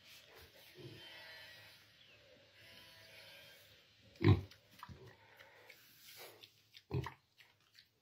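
A domestic pig grunting, with two short, louder grunts about four and seven seconds in.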